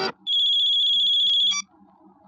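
Mobile phone ringing: one high, warbling electronic ring lasting about a second and a quarter, cut off with a couple of clicks as the call is answered.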